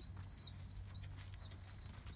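High-pitched bird calls in a pigeon loft: a run of thin, whistled chirps, about three in two seconds, over a low steady hum.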